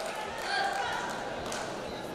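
Faint voices in a large, echoing sports hall, with a single soft thump about one and a half seconds in.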